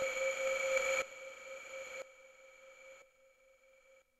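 Electronic tones from a Max/MSP patch of comb filters, allpass filters and delay lines: a bright, metallic chord over a noise wash. It drops in level in steps about once a second, down to a faint lingering tone by about three seconds in.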